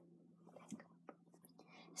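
Near silence: room tone with a faint steady hum and a few faint clicks.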